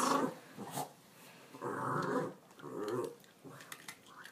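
Dog growling in three short bursts, the longest about halfway through.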